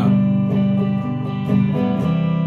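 Electric guitar strumming a chord that rings on, struck again about every half second.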